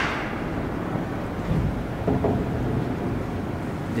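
A roughly 100-year-old TITAN traction freight elevator running as the car travels: a steady, smooth low rumble with no knocks or jolts.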